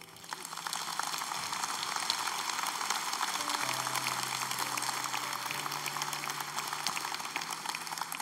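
A large audience applauding with many hands clapping, building up in the first second and then holding steady. Soft held notes of background music sound underneath.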